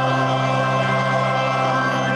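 Church choir and organ holding a sustained chord over a steady organ bass note.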